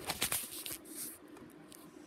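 Handling noise of a handheld phone being moved about: a few soft clicks and rustles in the first second, then quiet with a faint low hum.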